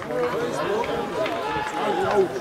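Several voices calling out and talking over one another during open play at an outdoor rugby match.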